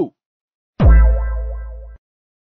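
A deep bass boom sound effect used as a comic shock sting. It hits a little under a second in with a quick drop in pitch, then fades over about a second before cutting off suddenly.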